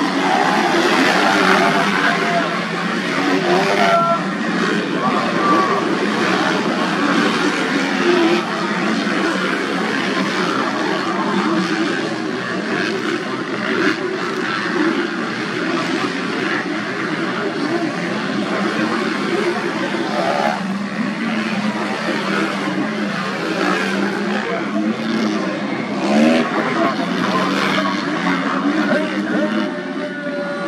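Several motocross bikes racing together, their engines revving up and down without a break as the riders open and close the throttle over the track.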